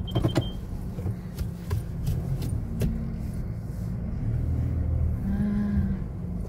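Car engine running low and steady, heard inside the cabin while the car inches along. A rapid, evenly spaced electronic beeping, like a parking sensor, stops about half a second in, and a few sharp clicks follow.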